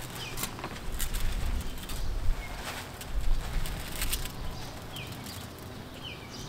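Granular 10-10-10 fertilizer being scooped from a plastic bag and scattered by hand onto bed soil: a string of short rustles and patters, over a low steady rumble. Birds chirp briefly a few times.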